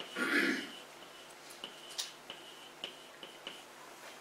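Chalk writing on a blackboard: a series of faint sharp taps and short scratches as the stick strokes out a word. A brief soft vocal murmur comes right at the start.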